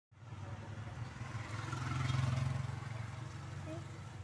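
Motorcycle engine running, heard from on board. It grows louder about two seconds in, then settles back.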